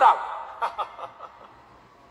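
Brief scattered chuckling from an audience in a large hall, a few short bursts that die away about a second in.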